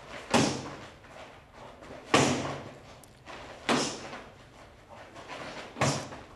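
Kicks smacking into a partner's padded gloves: four sharp slaps about every one and a half to two seconds, each with a short echo in the room.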